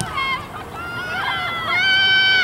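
Several high-pitched shouted calls overlapping, ending in one long, loud held shout near the end.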